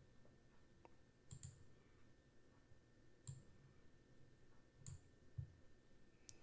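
Three faint computer mouse clicks, spaced a second and a half to two seconds apart, over near silence.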